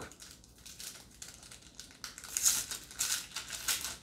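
Wrapper of a Topps Match Attax trading-card pack being handled and torn open by hand: faint rustling at first, then a run of short, loud bursts in the second half.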